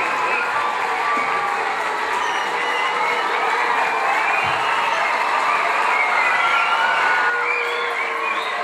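A crowd of young people and parents cheering and chattering, many voices overlapping at a steady level.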